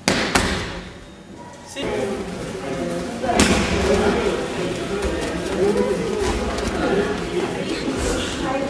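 A judoka thrown onto the tatami mat, landing with a thud just as the sound begins, and a second thud about three and a half seconds in, with voices talking in the hall around them.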